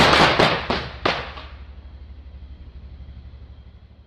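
Explosion sound effect: a loud, crackling blast with several sharp cracks in the first second, dying away into a low rumble.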